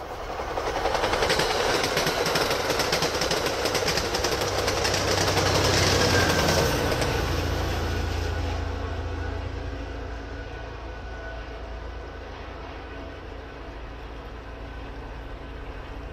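MBTA commuter rail push-pull train passing close by. First comes a loud run of wheel clatter on the rails as the coaches go past. Then the diesel locomotive pushing at the rear goes by with a low engine drone and fades into the distance.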